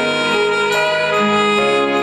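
Alto saxophone playing a tender, dreamy melody with accompaniment, the notes changing about every half second.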